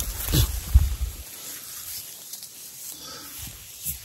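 Twigs and wet leaves brushing and scraping against a rain jacket and clip-on microphone while pushing through dense undergrowth. A short wordless vocal sound and a knock on the mic come in the first second. After that there is a quieter steady hiss of light rain with faint rustling.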